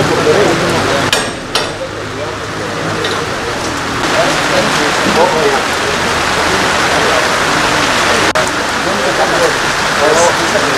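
Steady rain falling, with a crowd of people talking at the same time. It drops briefly in loudness about a second in.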